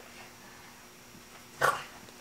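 A short, breathy vocal exhale, an 'ahh' after a swig from a drink can, once about one and a half seconds in, otherwise low room sound.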